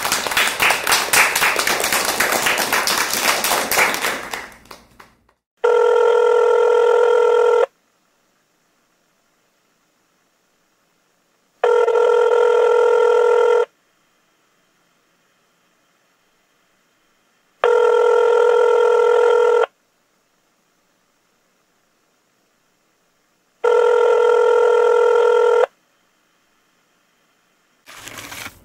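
Applause dies away over the first four seconds or so. Then a telephone rings four times, each ring about two seconds long with about four seconds of silence between: an incoming call.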